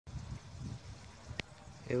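Low, uneven background rumble with a single sharp click about one and a half seconds in. A man's voice begins right at the end.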